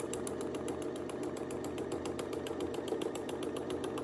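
Sewing machine stitching free-motion without thread, its needle punching through a paper pattern. It runs steadily: a hum with rapid, even needle strokes.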